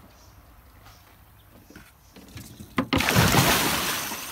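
An alligator gar thrashing at the surface: after a quiet start, a sudden loud burst of splashing water about three seconds in.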